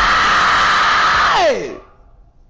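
A man's long, strained scream, held at one high pitch and then dropping sharply away near the end.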